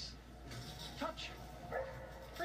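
A standard poodle barking a couple of times during an agility run, heard through a television's speaker.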